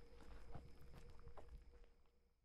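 Near silence: faint room tone with a steady low hum and scattered small clicks and knocks, fading out near the end.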